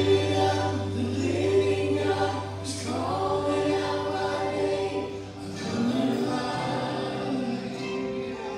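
Live worship music: several voices singing together over a band with acoustic and electric guitar and keyboard, with a held low note underneath that fades about three-quarters of the way through.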